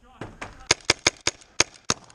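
Paintball markers firing, a quick, irregular string of sharp pops at roughly three to four shots a second.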